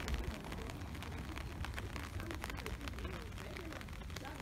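Outdoor ambience picked up by a handheld phone microphone: a steady low rumble of wind on the microphone with scattered small clicks, and faint voices in the background.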